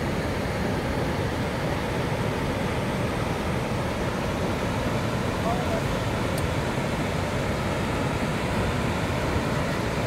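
Cumberland Falls on the Cumberland River: a steady, even rush of water pouring over the falls and through the rapids above them.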